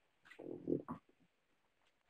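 Near silence, with one faint, short low murmur about half a second in.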